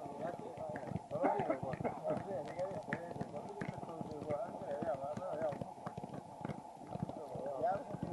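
Irregular dull thuds of several footballs being juggled and kicked on artificial turf, with indistinct chatter of players' voices throughout.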